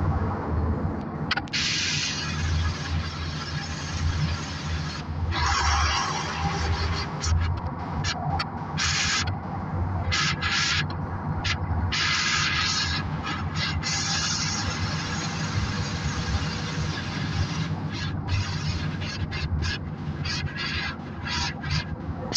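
NefAZ 5299 city bus under way: a steady low engine drone, with higher road noise that swells and fades every few seconds.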